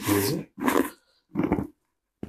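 A person's short grunts in three brief bursts during a chiropractic neck adjustment.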